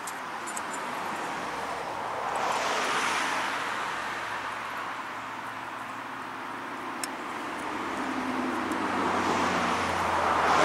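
Road traffic going by: a vehicle's passing noise swells and fades about two to four seconds in, and another builds toward the end with a low engine hum. A single light click about seven seconds in.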